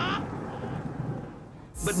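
Thunder rumble sound effect from a show intro, fading away, with a brief echoing voice right at the start. A sudden loud burst comes near the end.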